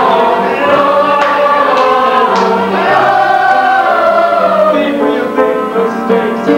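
A chorus of young mixed voices singing together in sustained lines, with a keyboard coming in on short repeated notes near the end.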